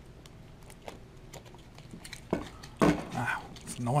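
Plastic-sleeved one-ounce silver rounds being handled and set down on a wooden table: soft plastic clicks, then two sharp knocks about half a second apart a little past the middle.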